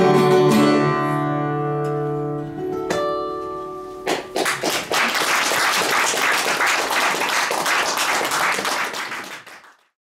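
Guitars letting the song's final chord ring and fade, with one last plucked note at about three seconds. Then applause from about four seconds in, fading out at the end.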